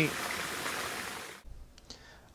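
Small creek running steadily, an even rushing of water, which cuts off abruptly about one and a half seconds in to quiet room tone.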